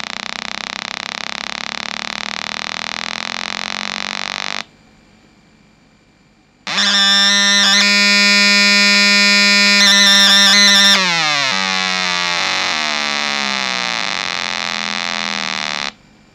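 Square-wave tone from a 555 timer oscillator through an 8-ohm speaker: a harsh, steady electronic buzz full of overtones. It cuts out about a third of the way in, comes back louder about two seconds later, and its pitch slides down partway through before holding steady. It stops abruptly at the end.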